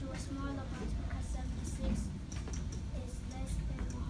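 Indistinct, quiet voices of children and a teacher in a classroom, over a steady low hum of room noise. Short high scratchy sounds come and go through it.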